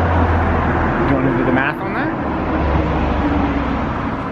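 Street noise from road traffic, with a strong, uneven low rumble throughout. A short bit of faint speech comes about halfway through.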